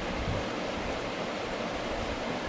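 Steady hiss of background noise with no distinct events.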